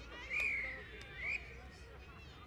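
A referee's whistle giving one long, loud blast that sags in pitch and rises again before cutting off suddenly. It is the whistle for half time. Faint voices can be heard underneath.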